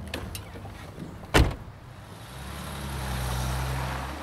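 Car engine running, growing louder over the last two seconds as the car approaches, after a single sharp knock about a second and a half in.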